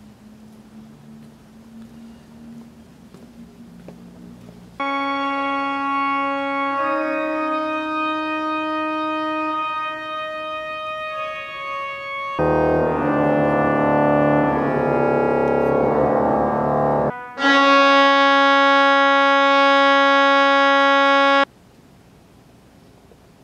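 Church organ playing long held chords: soft at first, then loud from about five seconds in, swelling into a fuller chord with deep bass around the middle, and after a brief break a last loud chord that cuts off sharply near the end.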